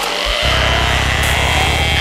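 Psytrance dance music. After a brief gap in the bass, a buzzing, rapidly pulsing synth bass line comes in about half a second in, under a sustained synth pad.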